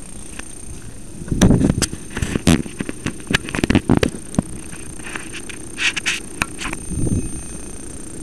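Handling noise from a small camera being moved and set in place: a run of knocks, bumps and scrapes through the first half, a few more near the end, over a steady low hum.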